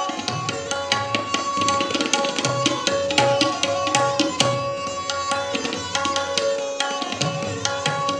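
Tabla solo: a fast, dense run of strokes on the treble drum with deep bass-drum strokes, over a bowed string instrument playing a steady repeating lehra melody.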